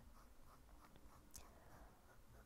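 Faint scratching of a Jinhao X159 fountain pen's steel fine nib drawing a series of short hatch strokes on notebook paper.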